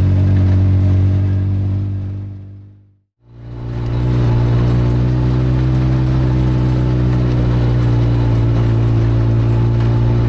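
Side-by-side UTV engine running at a steady speed, heard from inside the cab. The sound fades out about three seconds in and fades back in a second later, running steady again at a slightly higher pitch.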